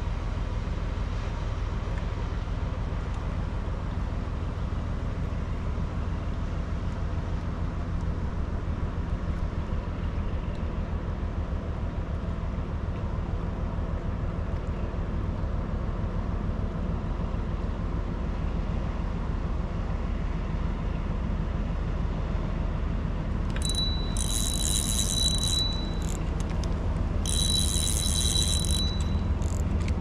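Steady low engine drone of a river ship passing on the water. About 23 seconds in, an electronic bite alarm sounds a steady high tone for about two seconds, then again for about two seconds near the end, signalling a bite on a bottom-fished rod.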